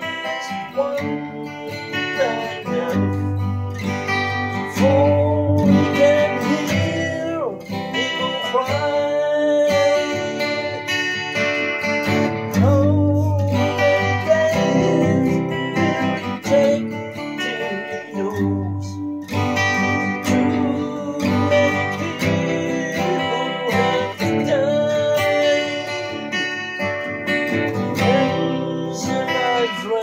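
Acoustic guitar fitted with a Fotobeer passive pickup, strummed in chords, steady and fairly loud.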